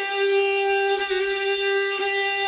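Solo violin improvising a taqsim in maqam Nahawand, holding one long bowed note with rich overtones, which dips briefly about a second in.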